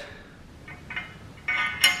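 Light metallic clinks of a steel bolt and washer being fitted into the steel crash bar's mounting bracket: a few faint touches, then a louder ringing clink near the end.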